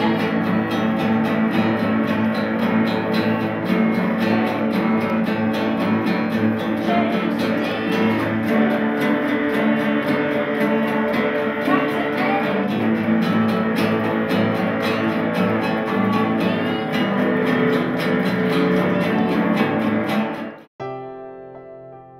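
A beginners' guitar ensemble of acoustic guitars and an electric guitar playing a tune together, steady and full throughout. About 21 seconds in it cuts off abruptly and quieter piano music begins.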